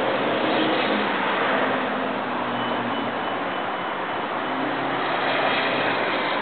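Steady vehicle noise: a broad, even rush with faint engine tones running through it.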